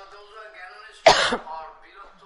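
A single short, loud cough about a second in, between faint stretches of speech.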